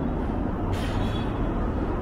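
Steady low rumble of city street traffic, with a brief hiss about three quarters of a second in.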